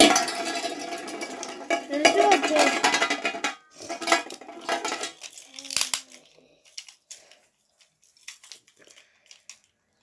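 Beyblade spinning tops rattling and scraping on a large metal pan for about three and a half seconds after the launch, then dying away. After that come scattered sharp clicks as the plastic tops are picked up and handled.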